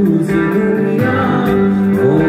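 Live band music through a concert sound system, guitar to the fore with sustained, sliding notes over a steady backing.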